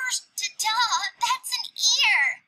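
Speech only: a high-pitched animated cartoon character's voice in English exclaiming "Oh hey, it's a garden with flowers, ta-da!"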